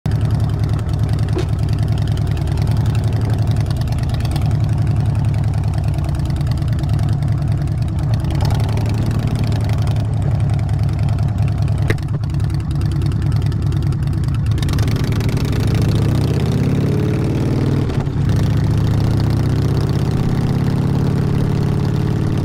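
Harley-Davidson V-twin motorcycle engine idling with a steady, lumpy beat. From about two-thirds of the way in, its pitch starts sliding up and down.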